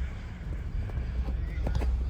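Outdoor sports-field ambience: distant voices of players and a few short knocks over a low steady rumble.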